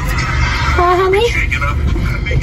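A woman's voice: a single drawn-out, high wordless vocal sound about a second in, over the low steady rumble of a car cabin.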